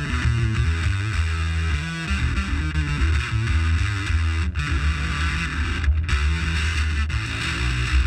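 Electric guitar played through a Frederic Effects Standard Fuzz Machine fuzz pedal into a combo amp: a loud, heavily fuzzed riff of low notes with a few short breaks.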